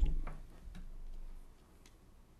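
Handling noise at a meeting table: a sudden low thump at the very start, then a few light clicks and ticks spread over the next two seconds.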